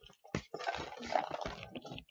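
Water sloshing in a plastic bottle as a child tips it up to drink, with a click near the start and a run of crackling and gulping.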